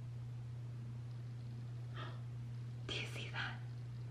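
A woman whispering briefly, in short breathy bursts about two and three seconds in, over a steady low hum.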